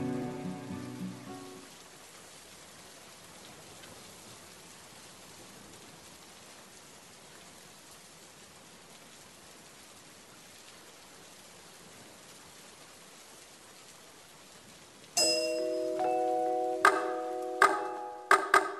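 Recorded steady rain, an even soft hiss, played through the hall's sound system as the preceding music fades out. About fifteen seconds in, music enters with sustained ringing notes, and sharp struck notes follow near the end.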